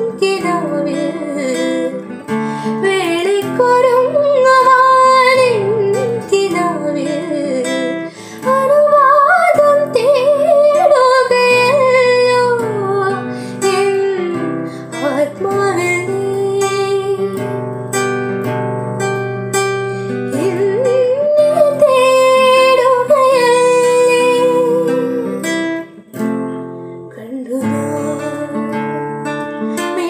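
A woman singing a Malayalam film song solo, accompanying herself on a strummed classical guitar.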